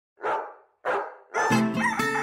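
A dog barks twice, then guitar music begins about one and a half seconds in.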